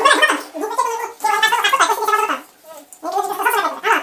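A person's voice in three pitched, wavering phrases without clear words.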